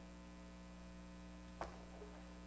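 Steady electrical mains hum in a quiet room, with a single short click near the end.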